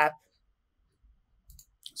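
Faint clicks of a computer mouse, one or two brief clicks about a second and a half in, in an otherwise quiet room.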